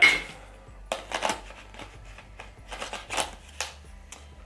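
Hard clicks and rattles of camera gear being handled as a lens is fitted to a Canon 80D body: a sharp click at the start, then short clusters of clicks about a second in and again around three seconds in.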